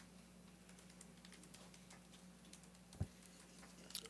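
Near silence: faint room tone with a low steady hum and scattered faint ticks, then a single thump about three seconds in as the podium microphone is picked up.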